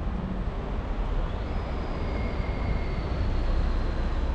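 Steady urban street noise, a low rumble of traffic, with a faint high tone that slowly falls in pitch through the second half.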